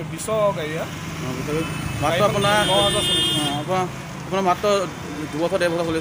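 Men talking over a steady low hum, with a short high steady tone for about a second near the middle.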